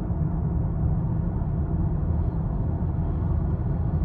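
Cabin noise of a 2023 Lincoln Aviator Black Label with a 3.0 L twin-turbo V6 at a steady highway cruise: an even, low drone of road and engine with no changes.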